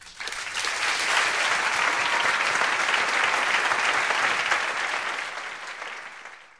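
Audience applauding, starting suddenly, holding a steady level, then tapering off near the end.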